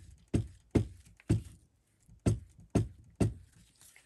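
Glue stick rubbed in quick strokes over a paper scrap lying on a cutting mat, about seven strokes in two runs with a pause of about a second between them.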